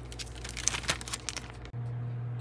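Clear plastic bag crinkling and crackling in a spurt of sharp rustles as cigars are handled and pushed into it, over a steady low hum.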